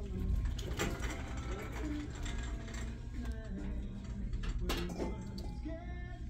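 Shop background sound: faint music and distant voices over a steady low hum, with a few light clicks.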